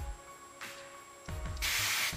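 Aerosol hairspray can spraying: one short hiss of about half a second near the end.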